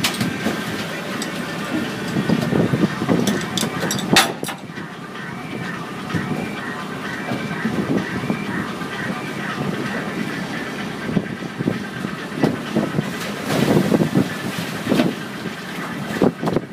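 A boat's engine running steadily, with a sharp knock about four seconds in.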